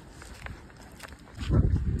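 Faint footsteps of someone walking outdoors on a sidewalk. About a second and a half in, a louder low rumble on the phone's microphone, typical of wind buffeting it.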